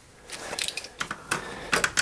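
A string of irregular light metallic clicks from a screwdriver turning the small adjusting screw under the shell-plate carrier of a Lee Pro 1000 progressive reloading press, clockwise, to bring the out-of-time carrier back into time.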